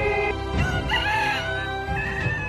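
A rooster crowing once, a drawn-out call that rises and bends, heard over background music.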